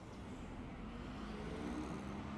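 A motor vehicle's engine running with a low rumble, rising slightly in pitch and getting a little louder.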